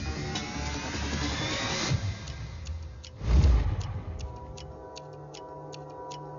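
Film action-thriller score: a rising synth sweep, a deep boom a little over three seconds in, then a tense ticking pulse, about four ticks a second, over low sustained notes.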